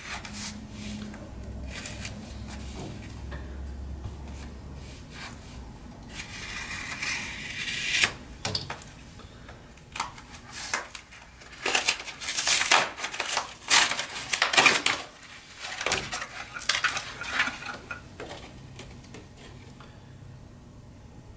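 A small cardboard box being opened by hand: a long tearing rasp about six seconds in, then a run of sharp crinkling and crackling of paper packaging.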